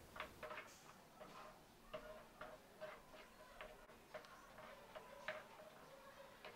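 Faint, irregular ticks and scrapes of a wooden spatula against a non-stick kadai as a thick tomato gravy is stirred, about two taps a second, some with a short ring from the pan.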